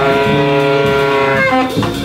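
Live jazz band: a tenor saxophone holds a long note that changes about a second and a half in, over plucked strings (sitar and double bass) and drums.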